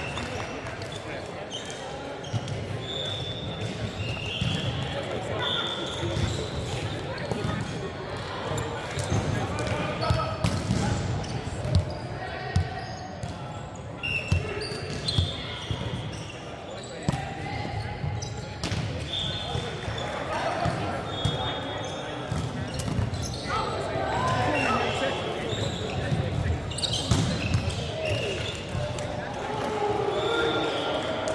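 Indoor volleyball play in a large, echoing hall: sharp smacks of the ball being hit, short high squeaks of sneakers on the wooden court, and players' voices calling.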